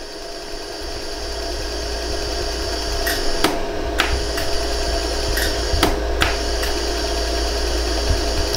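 Pulsed jewelry laser welder firing on a smoothing setting over a hollow gold earring: about half a dozen sharp clicks at irregular gaps, heard over a steady machine hum that grows slightly louder in the first few seconds.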